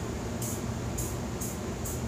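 Aerosol can of WD-40 spraying a steady hiss onto a cylinder head, soaking the carbon buildup.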